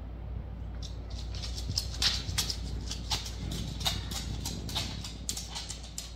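Dogs' claws clicking and pattering on a hard wooden floor as they move about: many quick irregular clicks, starting about a second in, over a low steady hum.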